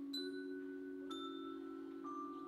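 A school symphony orchestra playing a quiet passage: a held chord with two bright struck notes about a second apart that ring on above it.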